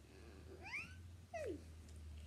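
Two short, high-pitched meow-like cries: the first rises in pitch and the second, about half a second later, falls.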